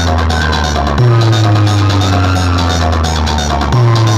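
DJ remix music played loud through a large stacked sound system of speaker boxes and horn speakers, dominated by long, very deep sustained bass notes, each with a falling tone above it. A new bass note starts about a second in and another near the end.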